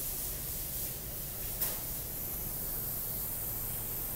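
Steady background hiss of room noise, with one brief click about one and a half seconds in.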